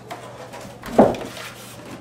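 Thin sheet of wood veneer handled as it is lifted and turned over on a bench, with one short, louder flap about a second in.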